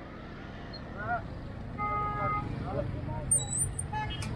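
Street ambience of a busy market square: a low rumble of motorbike and car traffic with scattered distant voices, growing louder over the first seconds. A brief steady high tone sounds about halfway through.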